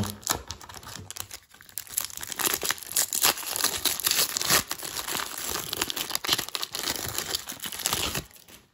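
A foil-wrapped baseball-card pack being handled, crinkled and torn open by hand: a continuous run of crinkling and rustling wrapper noise.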